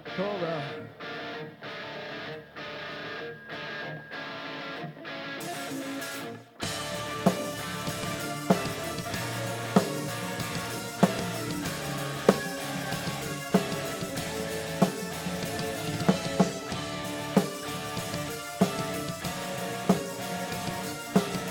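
Live heavy rock band starting a song. A guitar intro plays in a choppy, even rhythm, and about six and a half seconds in the drums and full band come in together, with a heavy drum hit about every second and a quarter.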